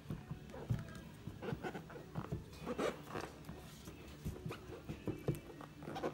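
Hands rubbing, sliding and tapping on a cardboard MacBook Air retail box, heard as short, irregular scrapes and soft taps.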